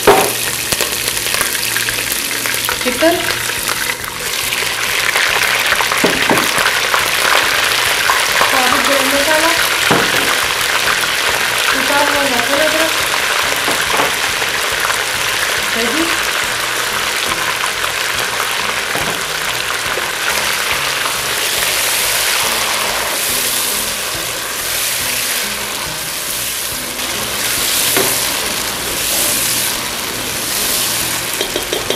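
Green chillies, then chicken drumsticks with whole spices, ginger-garlic paste and yoghurt, sizzling in hot ghee in a nonstick pot. The sizzle grows louder and denser about four seconds in and is stirred with a slotted spoon.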